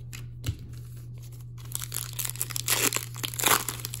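Silver foil wrapper of a hockey card pack being torn open and crinkled. After a few light taps, a dense crackle fills the last two seconds or so.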